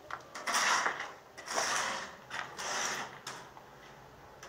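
A tool cutting a channel into a concrete-block wall for electrical wiring, in four short gritty bursts about a second apart.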